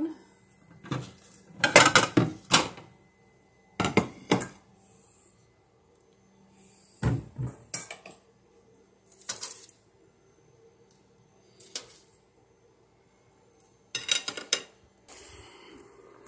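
Metal spatula clinking and scraping against a metal baking tray and a plate as roasted squash slices are lifted off, in short bursts of clatter every two or three seconds.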